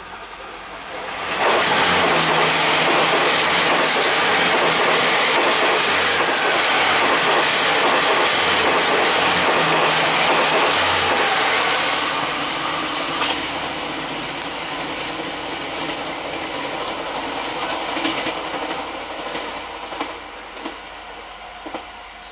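Twelve-car DR2800 diesel multiple unit passing close by on the adjacent track, its engines and wheels on the rails loud. The sound rises sharply about a second and a half in and stays loud for about ten seconds. It then fades slowly as the train runs off into the tunnel.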